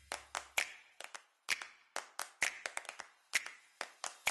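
A quick, uneven series of sharp clicks and snaps from an intro sound effect, with a low bass tone from the preceding music fading out in the first half second.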